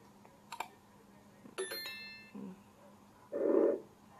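Subscribe-button animation sound effects played through a computer: a click, then a second click with a short bell-like ding. Near the end comes a brief, louder burst of noise.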